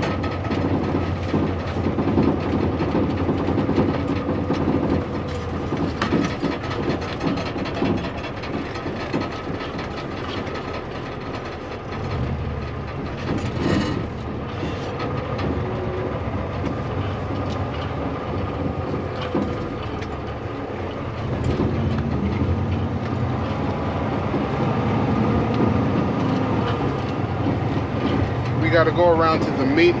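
Inside a semi-truck cab: the diesel engine runs steadily at low speed while the cab and trailer rattle and clatter over a rough gravel quarry road. The low engine rumble grows louder about twelve seconds in.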